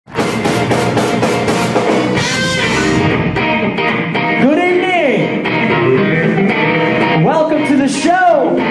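Funk band playing live with electric guitar, electric bass and drums. Two long notes swoop up and back down, about halfway through and near the end.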